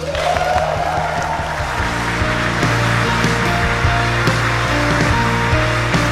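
Congregation applauding and cheering, with a rising whoop at the start. Music with long held notes comes in about two seconds in and goes on under the applause.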